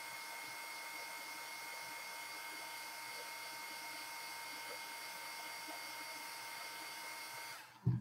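Handheld electric dryer blowing a steady stream of air over wet paint on a canvas, with a steady motor whine; it is switched off just before the end.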